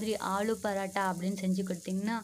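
Aloo paratha sizzling faintly on a flat iron tawa, under a woman talking steadily.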